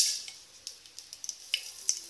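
Hot cooking oil sizzling faintly in a stainless steel pot, with scattered sharp crackles and pops at irregular moments.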